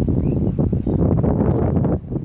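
Wind buffeting the microphone: a loud, low, fluttering rumble.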